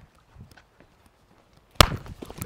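A single sharp hand clap near the end, used to mark and correct a dog that is harassing another. Before it, only a few faint small knocks and scuffs.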